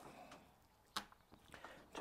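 Near silence, with one faint sharp tap about a second in.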